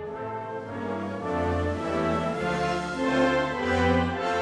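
Orchestral film-score music with brass and horns playing held notes that change every half second or so.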